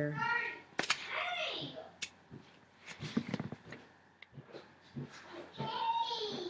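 Faint background voices from elsewhere in the building, with a few sharp clicks from small tools and gem sheets being handled on a table.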